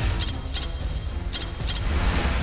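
Tense background score: a low rumbling drone with two pairs of short, high metallic jingles, the second pair about a second after the first.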